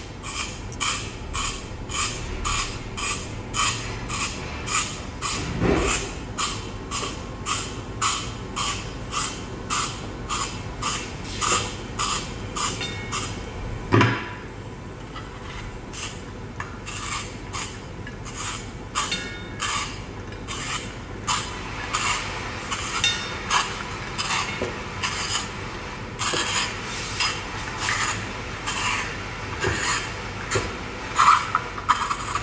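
Carrot being spiral-cut in a handheld stainless steel twist spiralizer, giving a rhythmic crunching rasp about twice a second, one with each twist. A single sharp knock comes about halfway through, followed by a short pause before the rasping resumes.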